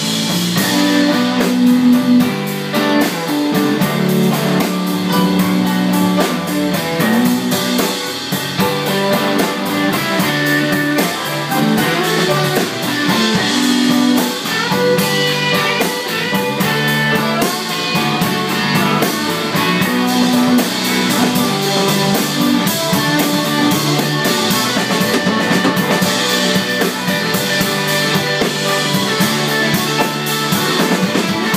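A live band playing an instrumental passage with no singing: a steady drum beat under guitar and a moving bass line.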